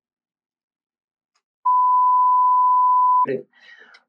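A steady pure beep tone, lasting about a second and a half and cutting off sharply, of the kind dubbed over a spoken word to censor it. A few words of speech follow near the end.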